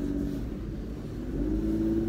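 Car engine and road rumble heard from inside the cabin; the engine note fades briefly, then rises again about a second and a half in as the car picks up speed.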